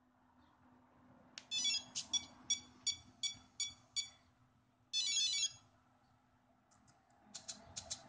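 Cyclic servos of an RC helicopter pulsating on their own, each pulse a short high-pitched servo whine: about seven quick pulses in under three seconds, then one longer one after a pause. This is the sign of the Mikado VBar Neo's IMU (rescue) sensor error. A few light clicks come near the end.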